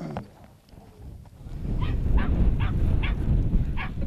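Dog barking: about five short barks in the second half, over a steady low rumble.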